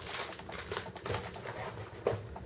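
Packaging being handled: rustling and small irregular clicks of a plastic-sleeved paper guide, foam inserts and a cardboard box.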